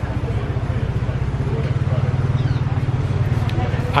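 A steady low engine rumble, even and unbroken, from a motor vehicle idling, with faint voices behind it.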